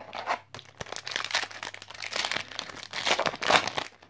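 A Yu-Gi-Oh! booster pack's foil wrapper crinkling in the hands and being torn open, a dense crackle that grows loudest near the end.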